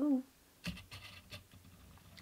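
Fingers rubbing and handling a clear plastic figure base, making a short cluster of scratchy sounds that last under a second.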